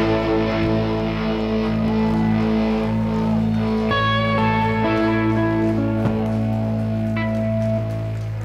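Live rock band with guitars and bass holding long sustained chords that ring out at the close of a song, with no drumming, and a few short lead guitar notes about halfway through.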